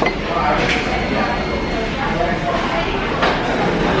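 Busy restaurant room noise: indistinct background voices with the clatter and clinks of dishes and cutlery, including a couple of sharp knocks.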